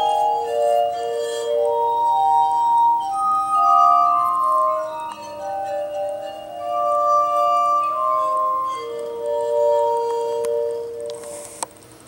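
Glass harmonica played by fingertips rubbing the rims of its rotating glass bowls: long, pure, held notes overlapping in a slow melody with chords, fading out near the end. A short click just before it stops.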